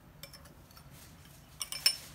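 Metal spoon clinking against a glass bowl as it scoops dry powder: a few faint ticks at first, then a quick run of sharp clinks near the end.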